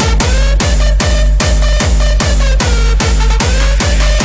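Hardstyle track playing: a heavy distorted kick drum on every beat, about two and a half a second, with a synth melody that bends in pitch above it.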